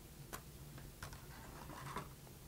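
Faint plastic clicks and rustling as an IDE ribbon cable's connector is pulled off a motherboard's header and handled: two small clicks, about a third of a second in and about a second in.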